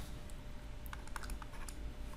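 A few light, sharp clicks and taps of a stylus on a pen tablet as a short arrow is written, over a faint low hum.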